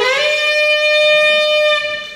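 Unaccompanied tenor saxophone playing a jazz solo: a single note that scoops up slightly at the start, is held steady, and fades away near the end.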